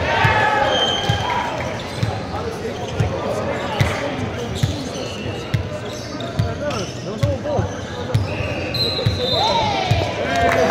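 Echoing sports-hall ambience: indistinct voices of players and onlookers, a ball bouncing on the court floor about once a second, and a few short, high sneaker squeaks.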